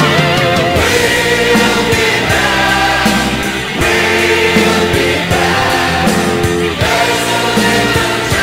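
Heavy rock song with several voices singing together in chorus over the band.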